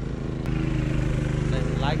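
Engine of a two-wheel walking tractor running steadily as it works a flooded rice paddy, getting louder about half a second in.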